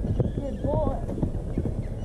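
A horse's hooves galloping on dirt and grass, a quick run of low thuds as it lands over a cross-country fence and carries on. A short voice call is heard partway through.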